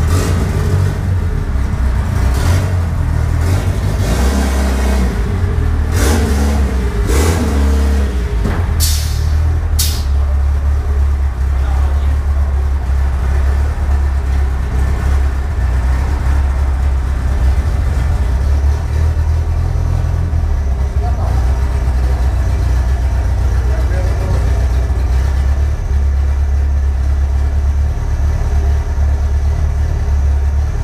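Tuned car engine running on a chassis dynamometer: a loud, steady deep rumble, with a few sharp clacks and a brief shift in pitch in the first ten seconds.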